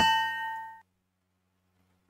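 A single bell-like ding, a pitched metallic chime with a clear ring, fading out within the first second.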